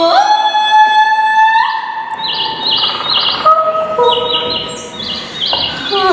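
A woman's wordless high singing that slides up into a long held note, then gives way from about two seconds in to bird-like chirps in quick groups of three over steady held tones.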